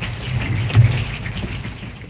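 A group of children imitating rain falling softly in a rainforest with their hands: a dense patter of many small clicks over a low rumble that swells just before the middle.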